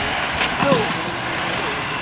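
Electric 1/10-scale RC touring cars racing: high-pitched motor whines that rise and fall as the cars speed up and slow down, one climbing sharply just past a second in, over steady background noise.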